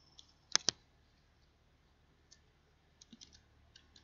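Computer mouse double-clicked about half a second in, two sharp clicks in quick succession, then a few faint clicks near the end.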